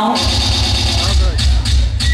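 Live band music over a PA kicking in with a heavy, pulsing bass beat about a quarter second in: the "batidão" called for by the singer.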